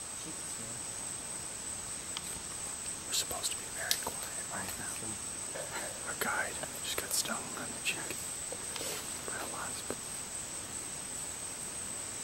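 Rainforest insects keeping up a steady high-pitched drone, with faint scattered rustles and clicks close by.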